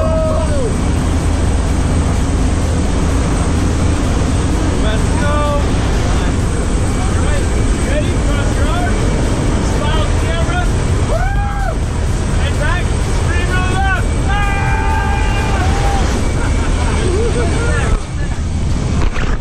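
Loud, steady drone of a small jump plane's engine and rushing air inside the cabin with the side door open, with scattered shouts and voices over it.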